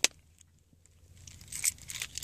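Plastic Chevrolet key fob being handled: a sharp click at the very start as the back cover snaps on, then quiet, then light plastic clicks and rustling from about one and a half seconds in.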